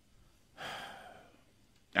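A man sighing into a studio microphone, one audible breath out about half a second in that fades away within a second.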